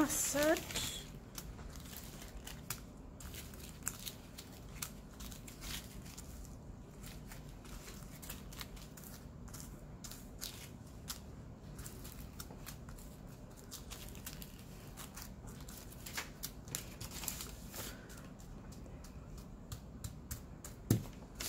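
Small plastic zip-lock bags of diamond painting drills being handled and sorted on a table: scattered crinkling of thin plastic and small clicks of the resin drills shifting inside the bags.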